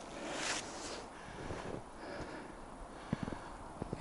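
Faint rustle of pine needles as a hand handles a pine branch, swelling briefly about half a second in, with a few soft ticks near the end.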